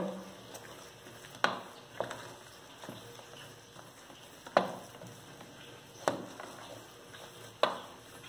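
A wooden spoon stirring thick mashed-potato filling in a metal pot. The mash squelches softly, and the spoon knocks against the side of the pot five times at uneven intervals.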